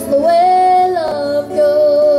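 A boy singing two long held notes over a strummed acoustic guitar.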